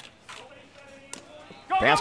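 A single sharp pop a little over a second in, a pitched baseball smacking into the catcher's leather mitt, over faint ballpark background sound.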